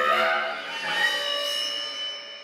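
A small contemporary chamber ensemble, a bass clarinet among its instruments, playing sustained, overlapping held tones. The sound swells early, a high steady tone enters around the middle, and it fades near the end.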